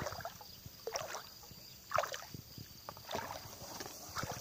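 Lake water sloshing and splashing in an even rhythm of about one stroke a second, as a person swims.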